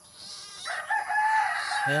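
A rooster crowing once: a single long held call lasting about a second, starting a little under a second in.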